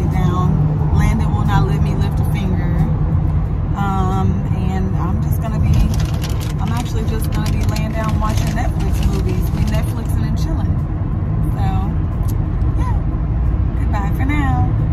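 A woman talking over a loud, steady low rumble inside a car cabin.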